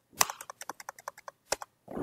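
Computer keyboard keystrokes. One loud key press comes about a fifth of a second in, followed by a quick run of lighter key clicks at about ten a second, and another loud key press past halfway: repeated key presses deleting characters from a line of text.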